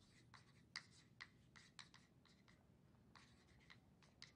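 Faint chalk writing on a blackboard: a string of short scratchy strokes at an uneven pace.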